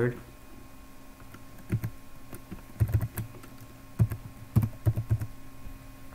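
Computer keyboard keystrokes as a password is typed: short key clicks in irregular little clusters, beginning about two seconds in.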